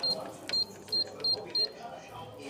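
Canon MF8280Cw control panel beeping as its keys are pressed, five short high beeps each with a click, while a Wi-Fi password is keyed in.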